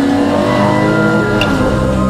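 Air-cooled flat-six engine of a 1977 Porsche 911 race car running hard at speed, its pitch rising and falling.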